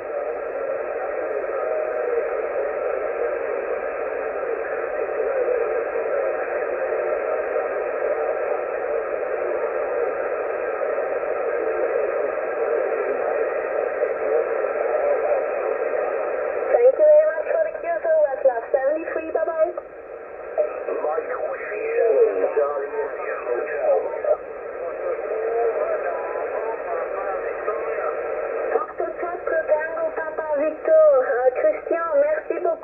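Shortwave voice reception on a Yaesu FT-991A tuned to 7.167 MHz in the 40-metre band, with the thin, narrow sound of single-sideband radio. For about the first half it is a steady mush of noise and overlapping faint signals. After that, a voice comes through in broken phrases over the noise.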